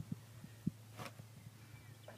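A few faint, short low thumps and one sharp click over a steady low hum.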